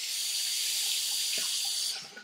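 Water running steadily from a bathroom tap into a sink, cut off shortly before the end.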